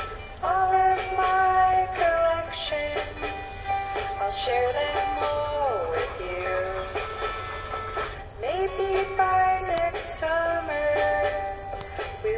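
Music: a song with a high singing voice holding long notes and sliding between some of them.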